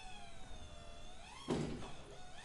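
Hydraulic pump running as it retracts the landing gear, a steady whine whose pitch sags under load and then rises again. A thunk comes about one and a half seconds in as the gear comes up.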